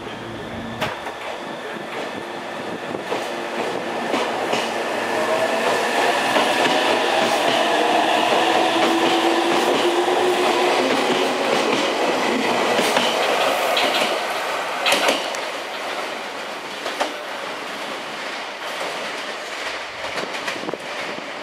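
Meitetsu 300 series electric commuter train pulling out of the platform and passing close by. Its motor whine climbs in pitch as it speeds up and swells to its loudest midway, with a few wheel clicks over rail joints later on as it moves away and fades.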